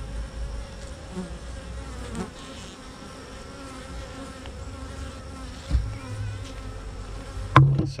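Honey bees buzzing around an open hive, a steady hum of many bees. A single dull thump comes a little past halfway, and a sharp click near the end.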